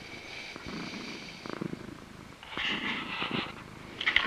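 Domestic cat purring close to the microphone, the purr rising and falling in pulses with its breathing. A louder airy, breathy stretch joins it in the second half.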